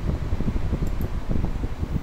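Steady low rumbling background noise, like a fan or air conditioner running, with two faint ticks a little under a second in.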